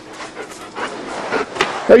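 A dog panting in a run of short, noisy breaths.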